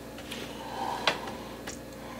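Low room tone, with a sharp click about a second in as a whiskey glass is set down on the wooden bar top, and a fainter tick after it.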